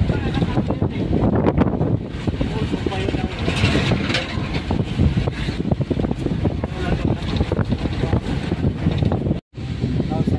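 Road and engine noise heard inside a moving car's cabin, a steady low rumble with wind buffeting the microphone, under indistinct voices. The sound drops out for an instant near the end.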